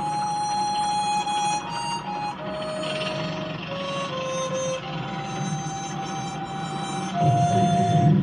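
Gentle film-score music played from a TV: a slow melody of long held notes over soft accompaniment. About seven seconds in, a low thunder rumble comes in and becomes the loudest sound.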